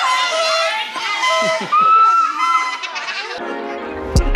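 Children's excited high-pitched voices shouting and squealing, with some long held cries. Near the end a music track comes in.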